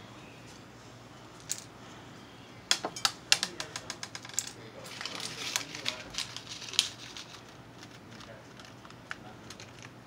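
Sharp plastic clicks and small rattles of an airsoft gas pistol's magazine being handled and loaded with BBs, in an irregular run. One click comes about a second and a half in, a quick cluster follows a second later, and it thins out to a few light ticks after about seven seconds.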